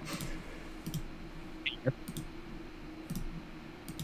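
Scattered faint clicks, about half a dozen over a few seconds, over a steady low hum.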